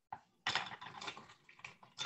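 Ice and bar glassware clinking and rattling faintly in an irregular patter, starting about half a second in.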